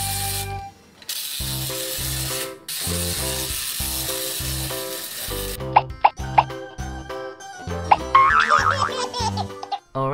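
Children's background music with a steady, pulsing bass line that cuts out briefly near the start. About six seconds in come a few sharp pops, and near the end a wavering high-pitched sound.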